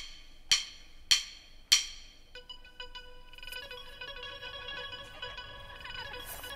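The opening of a live band's song: four sharp, ringing plucked notes evenly spaced about half a second apart, then a held, steady note with a bright stack of overtones that quietly fills the rest of the intro.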